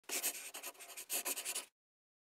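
A scratchy, rasping sound like pen strokes on paper, in two quick runs of short strokes, cutting off suddenly near the end.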